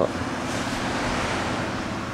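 Steady wash of wind and distant surf heard from high above the beach, with a faint low steady hum underneath.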